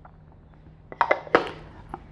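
A pause in a man's narration: faint room hiss, then a few short breath and mouth sounds about a second in.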